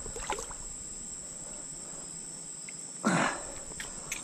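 Steady high-pitched insect trill, like crickets, over quiet riverside background, with a few small clicks near the start and a short rush of noise about three seconds in.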